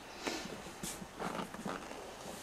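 Faint rustling and a few soft knocks from someone moving about and handling things in a small room, with a brief hiss about a second in.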